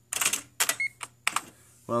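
IBM Personal Wheelwriter 2 electronic typewriter's daisywheel print mechanism clattering in a short rapid burst, followed by a few single clicks.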